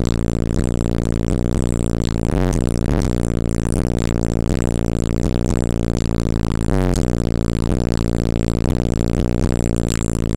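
Hip-hop track with heavy, deep bass played loud through a car audio system of three 18-inch DC Audio Level 5 subwoofers, heard from outside the car. The bass notes slide down in pitch about every four seconds.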